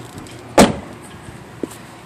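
A car door of a 2015 Lexus RX 350 shutting with a single solid thud about half a second in, followed by a small click near the end.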